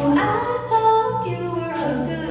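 Woman singing into a microphone, holding and bending long notes of a melody, her amplified voice to the fore.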